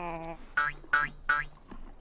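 Cartoon sound effects: a short, slightly falling note, then three quick boing-like tones that each slide upward, evenly spaced about a third of a second apart, over a low held note.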